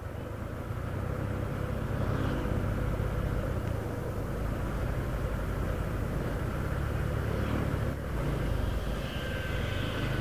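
Steady low hum of a moving vehicle's engine with road and tyre noise while driving; the hum shifts slightly about eight seconds in.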